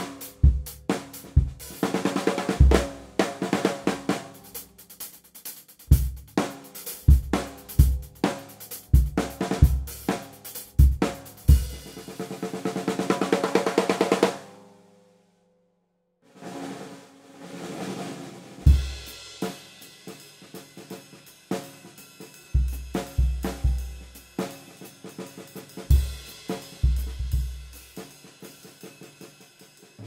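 Drum kit played to demonstrate a Ludwig 6.5x14" Acrolite aluminium-shell snare drum: snare strokes over bass drum beats and cymbals, building into a roll that swells and stops about halfway through. After a pause of about two seconds, a softer passage leads back into a groove with bass drum beats.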